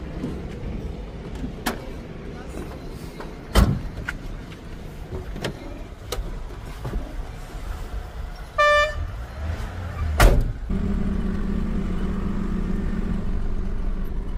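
Knocks and thumps around the cab of a diesel truck, the loudest about four and about ten seconds in, with a short vehicle horn toot just before the second thump. After that the truck's engine runs steadily.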